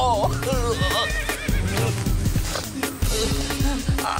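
Dramatic background music with a steady low pulse, with a high, wavering cry that falls away in the first second.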